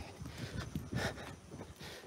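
Footsteps of someone walking on a paved alley path: a series of soft low thumps with light camera-handling rustle.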